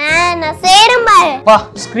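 A child's high-pitched voice speaking in a sing-song way over light background music.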